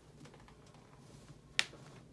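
A single sharp click about one and a half seconds in, over faint room hum, while the lower leg is held in gentle traction.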